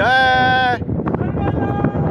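A person's loud, drawn-out shout or cry, held steady for most of a second at the start, then fainter calls.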